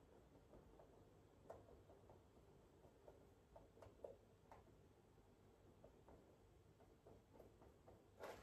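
Near silence: room tone with scattered faint, soft taps as paint is dabbed through a stencil onto a stretched canvas. The clearest taps come about a second and a half in and around four seconds in.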